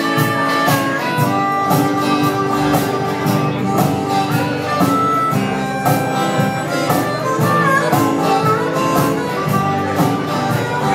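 Live acoustic band playing an instrumental intro: several acoustic guitars strumming a steady rhythm, with a harmonica playing held, bending notes over them.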